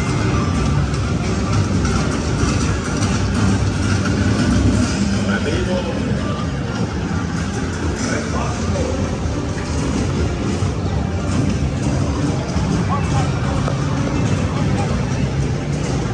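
Loud, continuous soundtrack of an interactive blaster ride: music mixed with voices.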